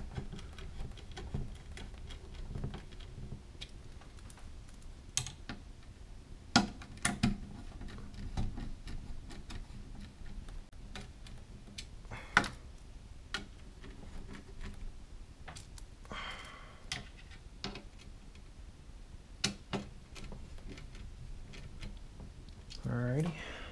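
Hand screwdriver turning the partially threaded mounting screws of an Arctic i11 CPU cooler: scattered small metallic clicks and ticks at irregular intervals, a few of them sharper.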